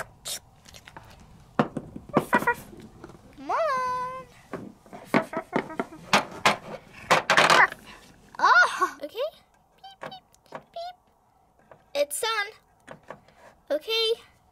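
Plastic toys being handled, with scattered sharp clicks and knocks as a doll and a toy puppy are moved and set into a small plastic tub. A voice makes a few short wordless sounds that glide in pitch.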